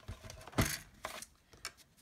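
Light handling clatter of a plastic scoring board and cardstock on a desk. A sharp tap comes about half a second in, then a few faint ticks.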